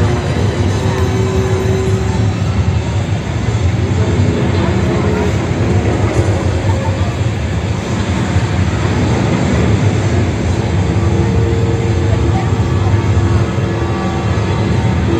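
Transaurus car-eating dinosaur machine's engine running with a steady low rumble, echoing in an indoor arena.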